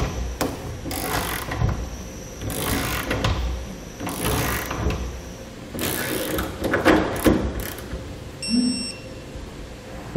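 Torque wrench on a socket extension ratcheting in a series of short strokes, each under a second, as the base-rail clamp nuts are tightened down to spec. A brief ringing tone sounds near the end.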